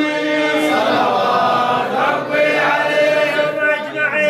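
Unaccompanied Arabic religious chanting of Mawlid verses by a man. The voice holds and ornaments long melodic notes, and other male voices appear to chant along with him.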